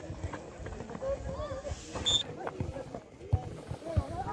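Voices of players and spectators at a football match, shouting and calling out, with a few sharp thuds scattered through, the loudest a little over three seconds in.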